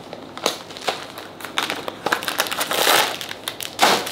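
Clear plastic packaging crinkling and crackling in the hands as it is unwrapped, in irregular bursts that grow busier and louder in the second half.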